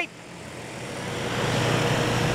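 Steady hum of a large agricultural spray drone's rotors in flight, rising in level over the first second and a half and then holding steady.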